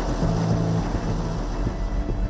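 A 4x4 vehicle driving along a road: a steady hum of engine and tyre noise.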